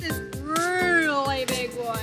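A person's long, drawn-out vocal exclamation that rises and then falls in pitch over about a second and a half, with light background music underneath.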